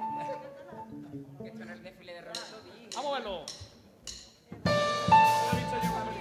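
Live band on stage: a few quiet held notes and scattered voices, then about three-quarters of the way in the whole band starts a song at once, much louder, with guitars and drums.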